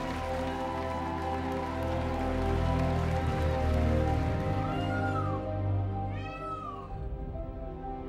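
Slow ambient background music, with two short cat meows over it: a faint one about five seconds in and a stronger, rising-then-falling one about a second and a half later.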